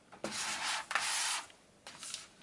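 Cardboard and plastic eyeshadow palettes rubbing and sliding against each other as they are handled, in two scraping strokes followed by a short softer scrape near the end.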